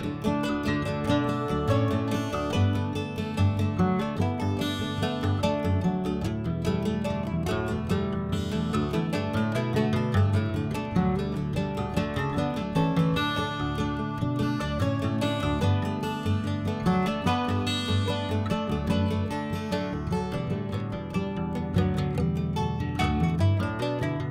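Background music led by strummed acoustic guitar, with a steady rhythm.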